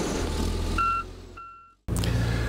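Case motor grader's diesel engine running with a low rumble, then two short reversing-alarm beeps as the sound fades out.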